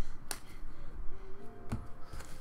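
Glossy trading cards being handled and laid down on a tabletop: a few light clicks and taps as cards are shuffled and set down.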